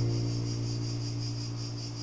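The final held chord of the karaoke backing track fading out, with a steady, high, pulsing chirr running through it.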